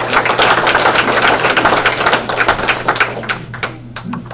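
Audience applauding: many hands clapping at once, thinning and dying away near the end.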